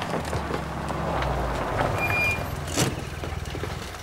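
A vehicle engine running as it drives, a low steady rumble with road noise.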